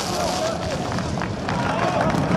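People's voices talking over a steady background of noise.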